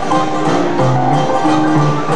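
Traditional jazz band playing live, with plucked banjo chords prominent over the rhythm section.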